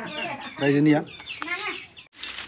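A chicken clucking, with one loud, steady-pitched call about half a second in.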